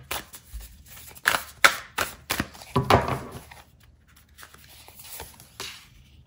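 Sufi Tarot cards being shuffled and handled, a run of irregular sharp card snaps and rustles. They are loudest in the first three seconds and grow fainter after that, as a card is laid down on the table.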